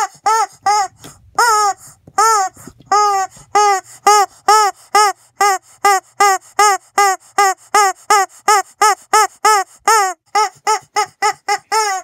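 Rubber chicken toy squeezed over and over: a long string of short honking squawks, each rising and falling in pitch, about three a second, coming faster near the end.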